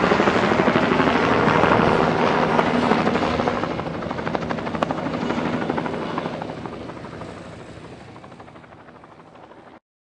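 A fast, steady mechanical chopping that fades out over the last several seconds and cuts off abruptly just before the end.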